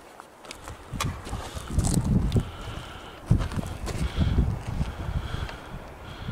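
Footsteps on loose rock and gravel, a dull crunch about once a second, with a couple of sharper clicks of stones.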